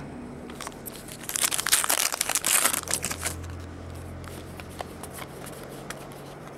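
Foil trading-card pack wrapper being torn open and crinkled, a dense crackling from about one and a half to three and a half seconds in.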